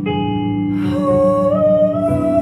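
Frosted quartz crystal singing bowls ringing in steady, overlapping sustained tones. About a second in, a humming voice enters on a long held note that slides slightly upward over the bowls.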